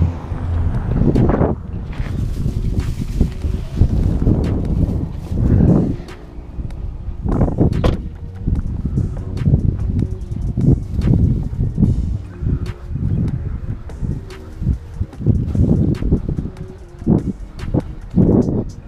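Footsteps on grass and paving, with wind and handling noise rumbling on a head-mounted action camera's microphone in uneven thumps about once a second. A car door is handled near the start.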